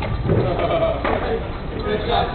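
People calling out with drawn-out shouts over a steady low rumble.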